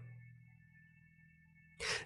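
Near silence between spoken phrases, with only a faint steady high hum, ending in a quick intake of breath near the end.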